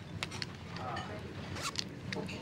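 A handbag zipper pulled in a few short rasping strokes, a cluster in the first half-second and two more near the end.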